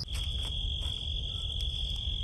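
Insects singing a steady, unbroken high-pitched trill over a low background rumble.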